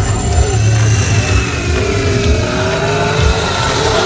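Car engine accelerating, its pitch rising steadily, with music underneath.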